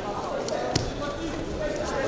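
Indistinct crowd voices in a wrestling arena, with one sharp smack about three-quarters of a second in as two wrestlers grapple on the mat.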